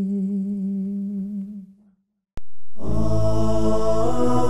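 Unaccompanied male voice holding the last sung note of a manqabat, fading out about two seconds in. After a short silence and a click, music starts near the end.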